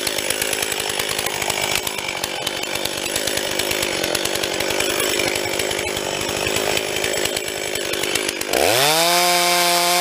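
A two-stroke chainsaw idling with a fast, pulsing run. About eight and a half seconds in it is throttled up, climbing quickly to a steady high whine at full revs.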